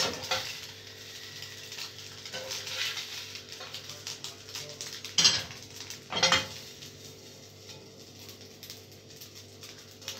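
Spatula scraping and tapping on a non-stick frying pan as scrambled eggs are scooped out onto a plate, with two louder knocks about five and six seconds in.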